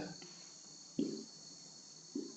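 Quiet room tone with a steady high-pitched whine or chirring, and one brief low sound about a second in.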